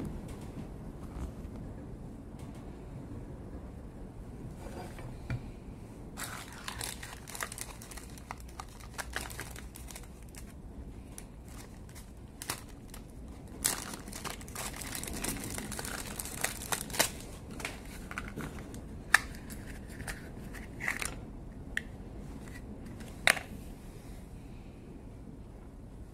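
Handling noise from taking the carbon brush and its spring out of a cordless angle grinder and laying them on a wooden bench: small irregular clicks, taps and scratchy rustles, sparse at first, more frequent with a few sharper clicks in the second half.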